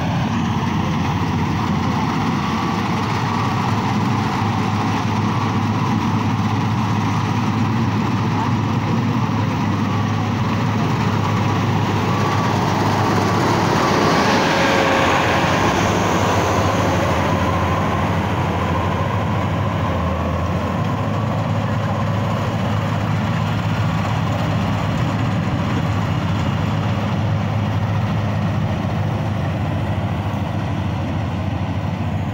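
Bangla Mark full-feed combine harvester running steadily as it cuts and threshes rice: a continuous engine and machinery noise with a low steady hum. It grows loudest about halfway through as the machine passes close by, then eases off as it moves away.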